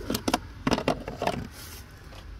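Plastic fuse box cover being handled and lifted off in a car's engine bay: a few sharp clicks and scrapes in the first second or so, then quieter.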